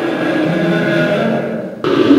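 Sustained background music: a steady chord of held tones that fades away shortly before the end.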